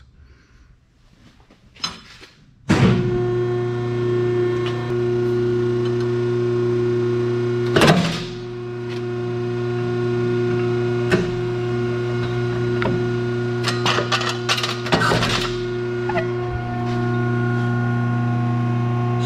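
Electric hydraulic pump of a VicRoc UB-302 U-bolt bender starting about three seconds in and running with a steady hum. Several metallic clanks and clatters come over it as a threaded U-bolt rod is clamped and lined up in the die.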